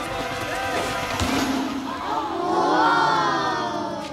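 Crowd hubbub with mixed voices, then from about two and a half seconds in several children's voices exclaiming together, rising and falling in pitch and loudest near the end.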